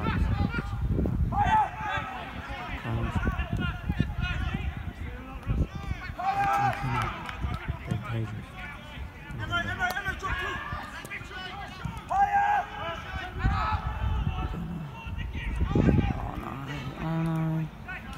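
Shouts and calls of players and spectators at a football match, coming and going throughout. Near the end one voice holds a long, drawn-out call.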